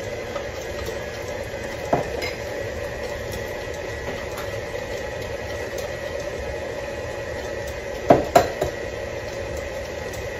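KitchenAid stand mixer running steadily, its beater turning through cake batter in a stainless steel bowl as eggs are beaten in one at a time. A sharp knock sounds about two seconds in, and two louder knocks come close together near the end.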